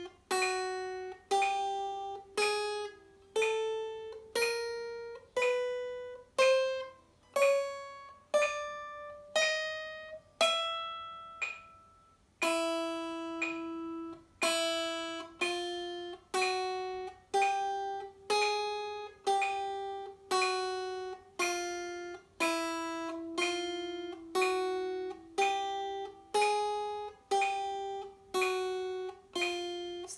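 Acoustic guitar playing a slow chromatic finger exercise: single notes picked evenly one after another, climbing step by step in pitch. The run breaks off briefly about twelve seconds in, then starts again from a lower note.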